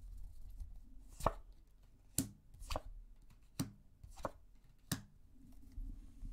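Tarot cards being handled over a wooden table: six sharp card clicks, spaced about half a second to a second apart.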